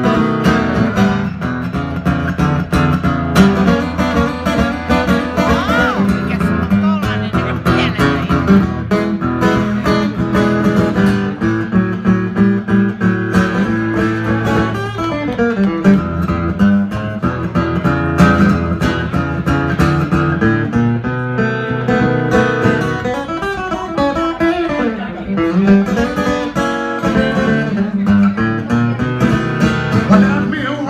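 Acoustic guitar played live in a blues style, picked and strummed continuously.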